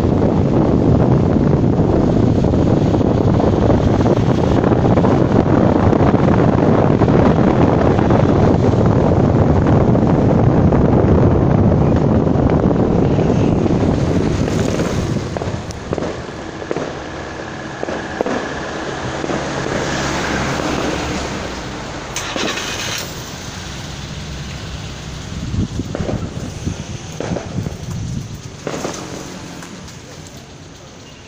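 Vehicle driving, with loud wind and road noise buffeting the microphone for the first half, then easing off as it slows. Several sharp cracks come in the quieter second half.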